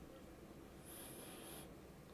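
Near silence: room tone, with a faint short hiss about a second in.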